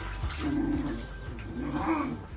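Belgian Malinois puppies growling in play, two short low growls, the second near the end.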